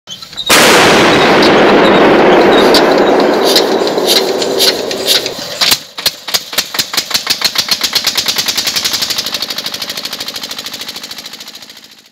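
Opening sound effect: a sudden loud burst about half a second in that dies away as a long hiss with scattered sharp cracks. From about six seconds it turns into a fast, even train of sharp clicks that fades away.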